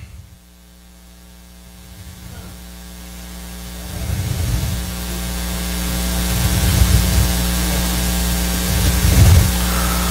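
Steady electrical mains hum with hiss, growing steadily louder through the pause, with a low uneven rumble joining about four seconds in.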